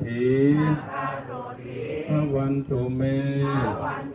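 Buddhist monks chanting in male voices, holding long level notes of about a second each with short breaks between them.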